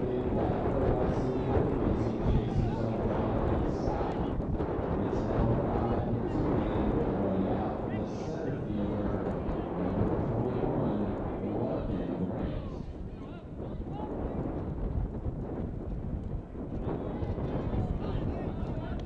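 Indistinct voices of people talking over one another, with wind noise on the microphone.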